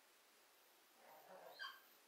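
Near silence: room tone, with a faint brief sound about one and a half seconds in.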